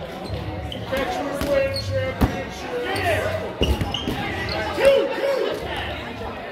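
Rubber dodgeballs smacking and bouncing on a wooden gym floor during play, several sharp hits, the clearest about two and three and a half seconds in, with players' voices calling out between them.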